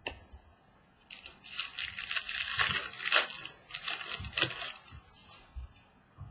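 Foil wrapper of a Bowman jumbo trading-card pack being torn open and crinkled by hand: about four seconds of crackling rustle with several louder crackles, starting about a second in.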